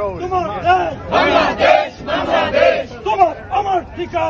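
A crowd of protesters chanting slogans together in a loud, rhythmic unison shout.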